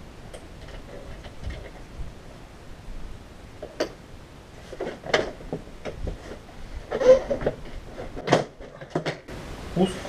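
Plastic knocks, clicks and rattles as a BMW's air-intake housing is worked loose and lifted out of the engine bay, with a few sharp clicks.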